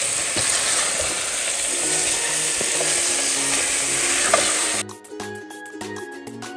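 Mutton pieces frying in hot oil in a stainless steel pot, a steady sizzle with faint background music underneath. A little before the end the sizzle cuts off abruptly and only the music remains.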